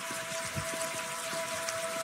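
A steady rushing hiss with a faint steady hum under it, laid in as a sound effect; it cuts off suddenly at the end.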